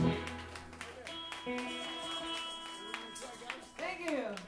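Band instruments sounding loosely between songs: a low electric bass note right at the start, then a sustained higher chord held for about two seconds before fading.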